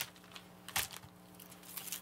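Plastic and paper record sleeves being handled: two short crinkles, one right at the start and one just under a second in.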